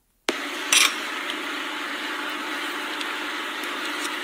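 Steady background noise with a faint low hum, cutting in suddenly just after the start, with a brief scraping sound soon after.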